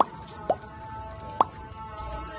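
Three short pop sound effects, each a quick drop in pitch, from an animated subscribe-button overlay: one at the start, one about half a second in, and one about a second and a half in. Background music with held notes plays under them.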